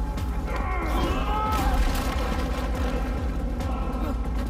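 Film fight-scene soundtrack: a deep, steady rumbling score with strained vocal sounds from the chokehold struggle, a voice gliding up and down about a second in, and a brief burst of noise just under two seconds in.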